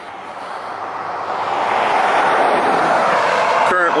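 A pickup truck passing on the highway, its tyre and road noise swelling as it approaches and staying loud as it goes by.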